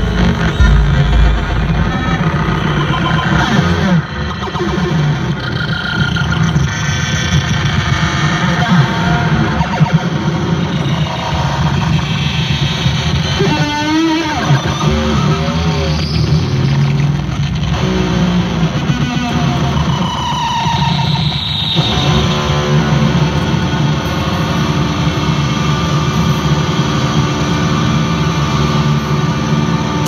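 Loud live rock music from a stadium PA with electric guitar run through effects, heard through a phone's microphone, with wavering, pitch-bending tones around the middle.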